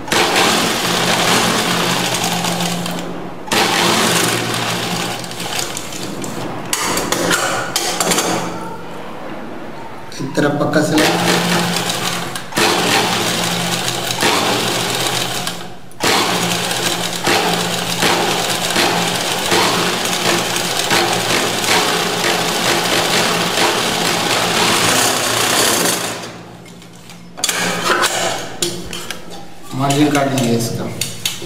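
Black straight-stitch sewing machine stitching fabric in long runs, stopping briefly a few times: about three seconds in, again around eight to ten seconds, near sixteen seconds, and for about a second shortly before the end.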